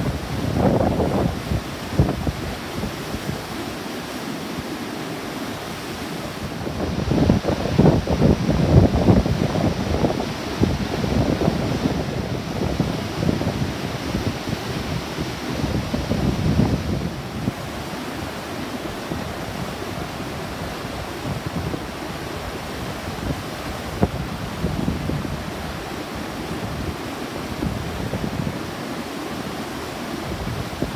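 Flood-swollen stream rushing steadily over a low concrete weir, the high water a typhoon has left. Wind buffets the microphone in gusts, strongest a quarter to a third of the way in.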